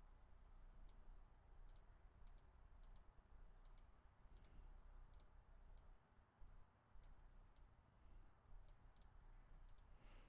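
Faint computer mouse clicks, about twenty at irregular intervals, some in quick pairs, over near-silent room tone.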